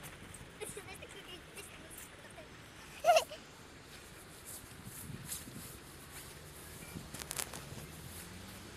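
Faint footsteps in snow with scattered soft clicks, broken about three seconds in by one short, loud, high-pitched cry, and a few sharp clicks near the end.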